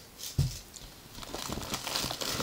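A dull thump about half a second in as something is set down, then rustling and crinkling of plastic shopping bags and packaging, growing louder, as items are rummaged out.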